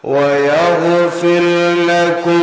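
A man's voice chanting a long, melodic, held line in the sung style of a Bangla waz sermon, starting fresh after a breath. There is a brief break about a second in, and the pitch wavers toward the end.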